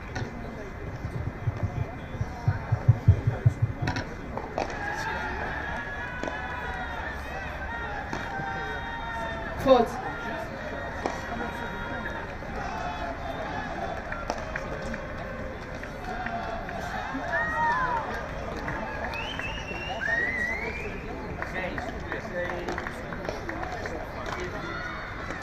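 Background voices and chatter at a padel court. In the first few seconds there is a quick run of low thumps, and about ten seconds in there is a single sharp knock.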